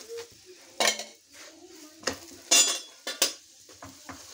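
Metal spatula clanking and scraping against a tawa while a paratha is turned and pressed, a few sharp clanks with the loudest a little past halfway, over a faint sizzle of the cooking bread.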